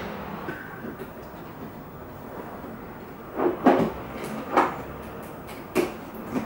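A few sharp knocks and thuds of toys and a cardboard toy box being handled while tidying a play area. They come in the second half, the loudest pair about three and a half seconds in.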